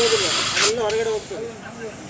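Air hissing at the rear tyre valve of a Suzuki scooter, thinning out about halfway through, with voices talking underneath.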